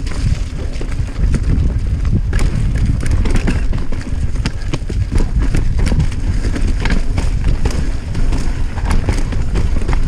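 Norco Range 29 full-suspension mountain bike descending a dirt singletrack at speed: a steady low rumble of tyres over the trail, with frequent clicks and rattles from the bike over roots and bumps.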